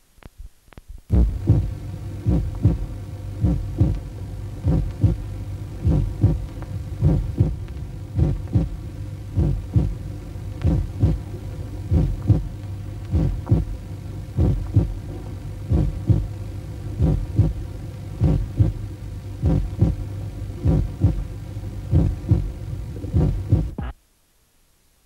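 A low throbbing pulse, about two beats a second, over a steady low hum, starting about a second in after a few faint clicks and cutting off suddenly near the end.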